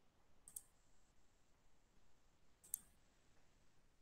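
Near silence with two short clicks, a faint one about half a second in and a sharper, louder one a little before the three-second mark.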